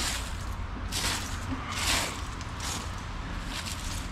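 A hand scattering seed and brushing loose garden soil: about five soft rustling swishes roughly a second apart, over a low steady rumble.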